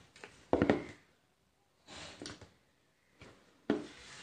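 Quiet room sounds as a small LED flower lamp is handled, with a brief voice-like sound about half a second in and a small knock near the end.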